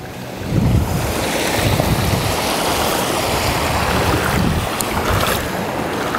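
Stream water rushing and splashing through the sticks and mud of a beaver dam, a dense steady rush that starts about half a second in, with uneven low rumbles of wind on the microphone.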